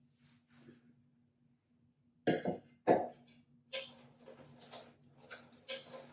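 Lavender stems in a container being handled and set in place on a sink ledge: two short, louder knocks or handling sounds about two and three seconds in, then rustling and light clicks.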